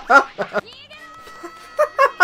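A man laughing hard in quick, rhythmic bursts that die away about half a second in; the laughter starts up again near the end.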